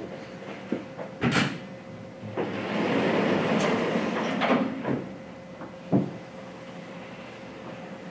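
Chalkboard being handled: a sharp knock, then a steady scraping slide lasting about two and a half seconds, and another single knock near the sixth second. A faint steady hum runs underneath.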